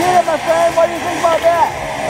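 A man talking: speech only, no other clear sound.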